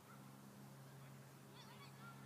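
Near silence: faint distant bird calls over a low steady hum, with a short cluster of calls near the end.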